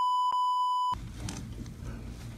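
An edited-in censor bleep: a steady, loud, pure beep tone with all other sound blanked out, covering a spoken name and cutting off suddenly about a second in. Faint room sound follows.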